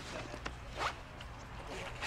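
A short rasping scrape that rises in pitch, a little before a second in, over a low steady hum.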